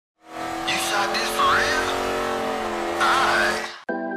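Channel logo intro sound effect: a loud noisy rush over steady held tones, with sliding high squeals about a second in and again near three seconds, cut off abruptly just before the end.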